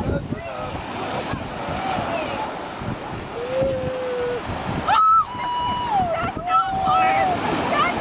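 Ocean surf breaking and washing up a pebble beach, with wind on the microphone. People's voices call out over it in several drawn-out cries, one held for about a second near the middle.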